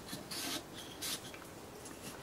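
Fingertips rubbing along the polymer frame and rails of a Heckler & Koch P30L pistol during cleaning: two brief, faint scratchy strokes, about a third of a second and about a second in.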